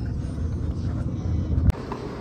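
Steady low road rumble inside a moving car's cabin, cut off by a sharp click near the end, after which only a quieter ambience remains.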